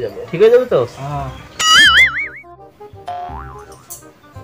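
A cartoon 'boing' sound effect with a loud, wobbling pitch about one and a half seconds in, then a second, quieter boing that rises and wobbles about three seconds in, over light background music.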